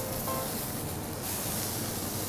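Soft background music over a steady hiss of steak sizzling on a hot teppanyaki griddle.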